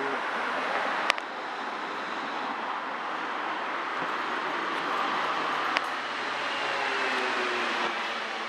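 Steady street traffic noise, a continuous hiss of passing vehicles, with two sharp clicks, one about a second in and one near six seconds.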